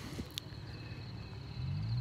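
Quiet outdoor background with a faint steady high-pitched tone and a single sharp click, then the low engine hum of an approaching car coming up near the end.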